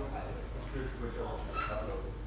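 Indistinct voices talking, with a brief high-pitched sound about a second and a half in.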